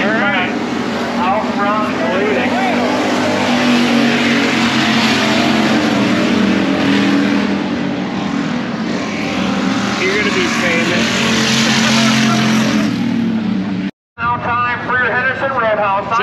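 Dirt-track race cars running laps, a loud, steady engine drone heard from the grandstand with voices over it. It cuts off sharply about fourteen seconds in, and talk follows.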